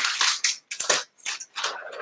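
Large sheets of flip-chart paper rustling and crackling as they are lifted and folded back off the chart, in several short bursts.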